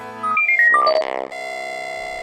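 Short electronic logo jingle: a quick run of beeping synthesizer notes, mostly falling in pitch, with a swelling whoosh over them, settling a little over a second in into a steady held synthesizer chord.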